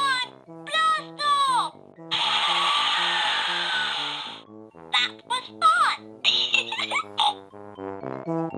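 Cheerful children's background music with a steady, repeating melody. Over it come high, cartoonish voice-like calls that slide down in pitch, a hissing whoosh that starts about two seconds in and lasts about two seconds, and a run of quick, chirpy vocal sounds near the end.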